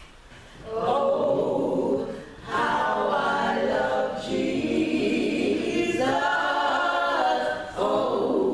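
Three women's voices singing a gospel hymn a cappella into microphones, in long held phrases without accompaniment. The singing starts up after a short pause at the beginning.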